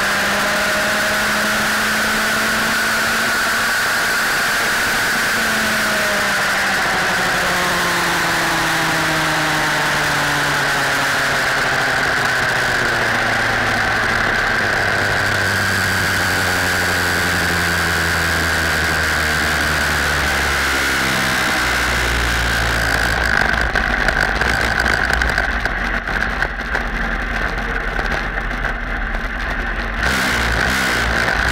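A junior dragster's single-cylinder engine runs, its note sinking slowly over about twenty seconds as the car slows, with a steady high whine over it. Near the end a rougher low rumble takes over.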